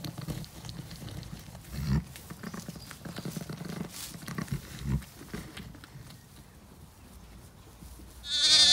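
A ewe gives low, short calls over her newborn lamb in several bouts during the first five seconds, with faint rustling of straw bedding as the lamb stirs; the last few seconds are quieter.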